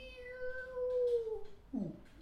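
Overtone singing: a man holds a sung tone while a whistle-like overtone above it steps downward in pitch. The tone then slides lower and ends in a quick falling swoop near the end.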